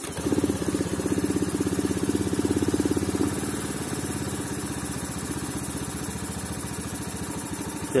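Honda Beat's fuel-injected single-cylinder four-stroke engine starting and idling unevenly: it pulses harder for about the first three seconds, then settles to a steadier, lower idle. The idle air screw is turned too far out, letting in too much air, which makes the idle unstable to the point of coughing.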